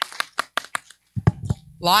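Hand claps from one person close to the microphone, about five a second, stopping about a second in, followed by a couple of soft thumps.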